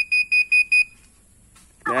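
Homemade ultrasonic obstacle-detector wristwatch sounding its alarm (panic) mode through its mini speaker: rapid high-pitched beeps, about five a second, that stop just under a second in.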